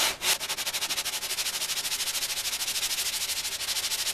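Cast-iron sole of a Stanley No. 4 Bailey smoothing plane scrubbed back and forth on 150-grit sandpaper in quick, even strokes, lapping the sole flat.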